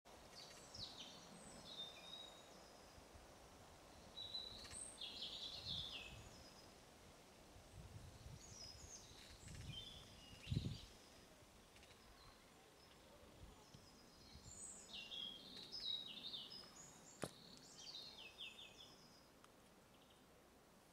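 Faint birdsong: short, quick chirping phrases repeated every few seconds over a quiet outdoor background. A dull low thump about halfway through and a sharp click near the end.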